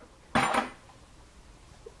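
A single short clatter of a hard object being handled, about half a second in, then faint room tone.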